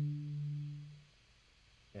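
Yamaha DX7 FM synthesizer sounding a single low note: a steady, nearly pure tone that starts at once and fades out after about a second.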